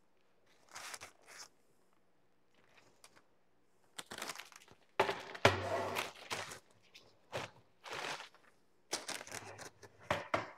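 Parchment paper rustling and crinkling in several short, irregular bursts while a cake is turned out of its baking pan onto it.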